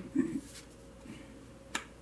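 Tarot cards being drawn from a deck and laid out on a cloth-covered table, with faint handling rustle and one sharp card snap near the end.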